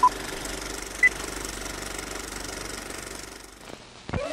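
Old film projector running with a fast, steady clatter, under the beeps of a film countdown leader: a beep at the start and a higher-pitched beep about a second in. The clatter fades out shortly before the end.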